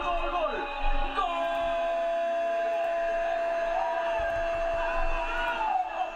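A football broadcast commentator's long, drawn-out goal call, held on one steady note from about a second in, with other broadcast voices going on underneath.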